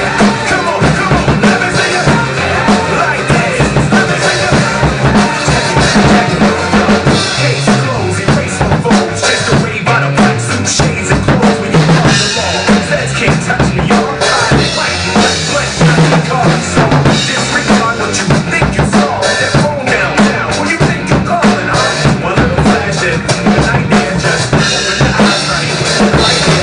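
Pearl acoustic drum kit played without a break, bass drum and snare driving a steady groove, over a recorded backing track with a bass line.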